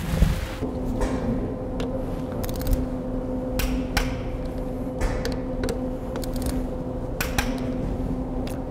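A torque wrench and socket working the motor fixing bolts of a robot's belt-drive motor: a series of sharp, scattered metallic clicks as the bolts are tightened to torque. A steady low hum runs underneath.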